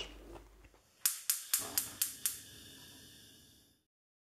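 Six sharp clicks in quick, even succession, about a quarter of a second apart, followed by a faint ringing tail that fades away.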